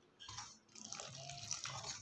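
Water poured from a jug into gram flour in a steel bowl to make batter: a faint trickle of pouring water.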